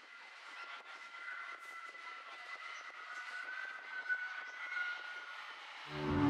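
Faint London Underground train sound: a high, steady two-tone whine over a rushing hiss, with the upper tone rising slightly midway.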